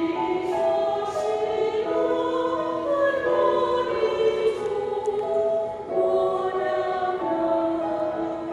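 Small mixed church choir singing a hymn together, holding long notes that move from pitch to pitch, with a brief dip about six seconds in.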